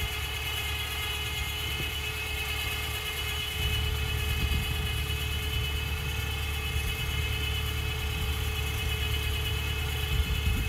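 Diesel engine of a CAT 305.5E mini excavator running steadily, getting louder about three and a half seconds in, with a steady whine over it.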